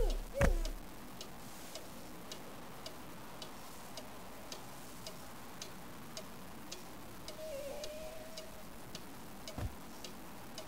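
A clock ticking steadily, a little under two ticks a second, after a heavy thud in the first half second. Near the end a faint wavering tone rises and falls briefly, and a soft knock comes just before the close.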